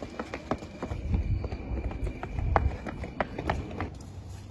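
Several people running on asphalt: quick, uneven footfalls, with a low rumble from the handheld phone being jostled as its holder runs.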